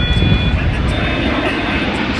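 Airplane engine noise from an aircraft passing overhead: a loud, steady rumble with a thin high whine.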